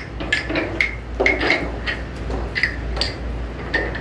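Wooden rhythm sticks clicking and clacking together in scattered, irregular taps, each with a short bright ring.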